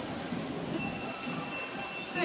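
Steady background hum of a shopping mall's indoor space, with a faint thin high tone starting about a second in.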